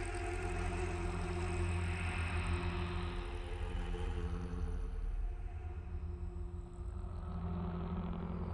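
Beatless droning intro of an electro-industrial track: a low, steady electronic drone with sustained tones above it.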